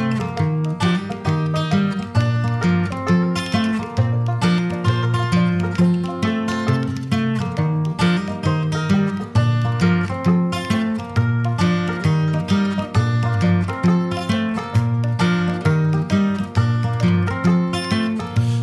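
Instrumental break of an Americana country song: plucked string instruments playing over a bass line with a steady beat, no singing.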